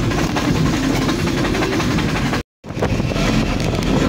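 Steady rumble of a moving vehicle with wind and road noise, recorded from the vehicle as it travels; the sound cuts out completely for a moment about two and a half seconds in, then resumes.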